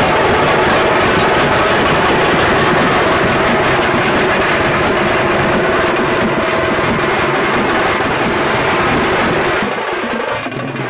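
Dollu kunitha troupe beating many large barrel drums together in a loud, dense, fast beat. The drumming falls away just before the end.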